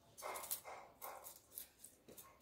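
Kitchen knife cutting small fish on a wooden chopping block, with sharp strokes about three a second. A few short whine-like sounds come in the first second or so.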